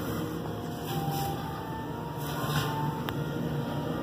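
A steady low machine hum, with a few faint short tones over it.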